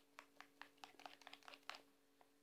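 Faint irregular clicks of a spoon stirring a soft paste in a small dish, over a low steady hum.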